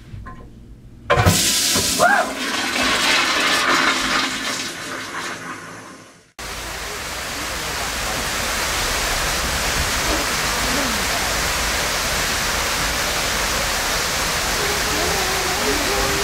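Hotel toilet flushing: a sudden, loud rush of water about a second in, fading away over some five seconds. After an abrupt cut, a steady, even rushing noise follows.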